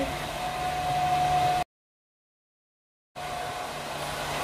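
Hair dryer running with a steady whine. About a second and a half in it cuts off abruptly into dead silence for about a second and a half, then the same dryer sound comes back.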